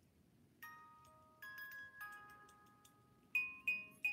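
A faint tinkling of bell-like chime notes at several pitches. They begin about half a second in and are struck one after another, each ringing on, with the brightest notes near the end.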